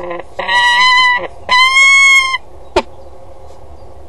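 Peregrine falcon calling from the nest box: two loud, drawn-out calls back to one another, each under a second long, the second slightly arching in pitch, followed by a single sharp click.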